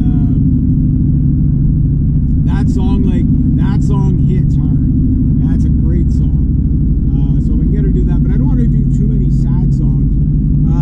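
Steady engine and road drone heard inside a moving Honda Civic's cabin at cruising speed, with a man's voice talking over it from about two and a half seconds in.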